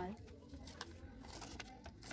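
A woman's words trail off at the start, then faint rustling and small clicks as a sheet of paper, the microphone's instruction manual, is handled.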